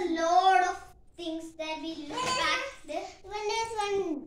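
A young child singing in a high voice, held notes sliding up and down, with a short break about a second in.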